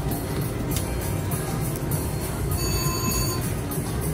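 Video slot machine playing its free-spins bonus music over a steady background din, with a brief chime about three seconds in.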